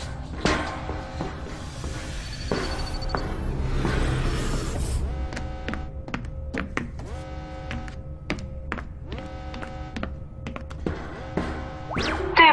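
Film soundtrack: music over a low rumble that swells about four seconds in, then sustained tones with a run of sharp thuds through the second half.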